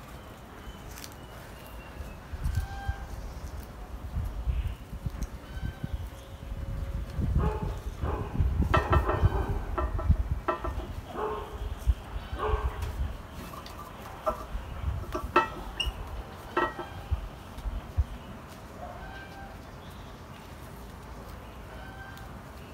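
Chickens clucking in short scattered calls, mostly in the middle of the stretch, over low rumbling handling noise as gloved hands work the bonsai's branches.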